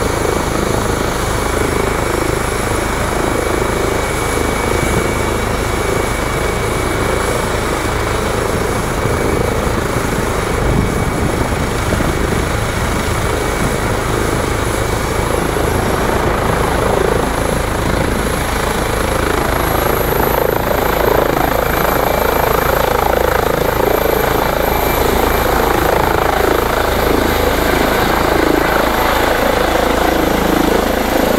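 Eurocopter EC135 helicopter running on the pad, with the rotor turning and a high turbine whine. The whine rises in pitch about two-thirds of the way through as it is brought up to take-off power, and the sound grows a little louder as it lifts off near the end.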